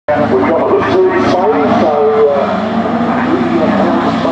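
Engines of a pack of autograss racing cars revving hard together on a dirt track, their pitch repeatedly rising and falling as they accelerate away.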